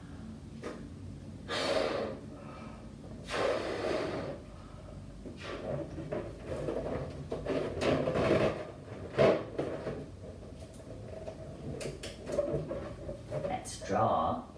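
A latex balloon being blown up by mouth with two long puffs of breath, then the stretched rubber squeaking and rubbing in the fingers as it is knotted.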